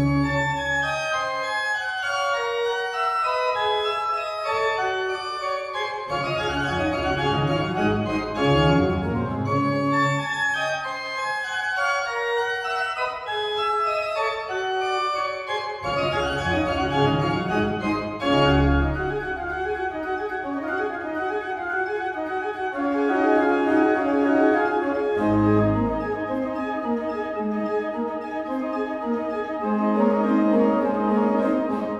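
Arp Schnitger pipe organ playing fast running Baroque passagework, with lower bass notes sounding beneath at times.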